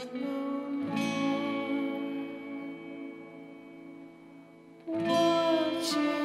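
Acoustic guitar chords strummed twice early on, then left ringing and fading away for several seconds. Near the end a louder strum comes in, with a man's sung note over it.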